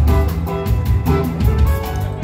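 Rock band playing live: electric guitar and a drum kit, with a steady beat of drum and cymbal hits under held guitar notes.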